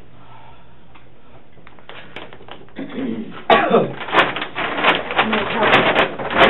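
Quiet room hum at first. From about three seconds in, a person's voice speaks over the rustle of a sweatshirt being pulled off and handled.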